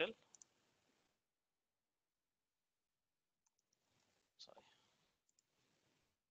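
Near silence with a few faint computer mouse clicks, and one short muffled noise about four and a half seconds in.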